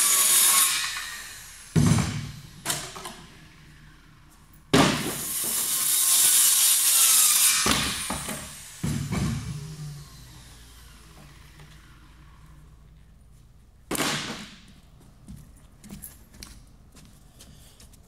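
A power saw cutting laminate-faced particle board in several runs, the longest about five to eight seconds in, the motor's whine falling away after each cut.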